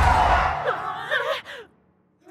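Loud soundtrack with a deep low rumble stops about half a second in. A short cartoon voice follows, wavering up and down in pitch for about a second and fading out. Near silence falls near the end.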